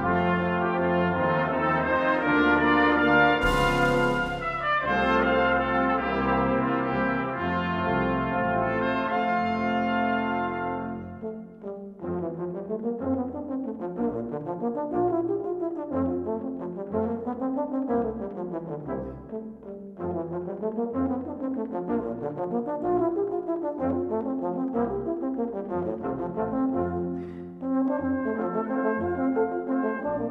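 Military wind band playing a slow air in full brass-band scoring, with a cymbal crash a few seconds in. About 12 seconds in the full band drops away and a low brass soloist plays fast runs sweeping up and down over soft band accompaniment.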